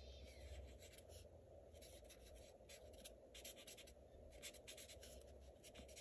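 Faint scratching of a marker tip stroking across stamped paper, in short runs of quick strokes with pauses between, as the leaves are shaded.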